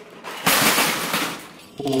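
Large plastic Bruder toy garbage trucks clattering as they tumble off a stack, a rapid run of knocks lasting about a second.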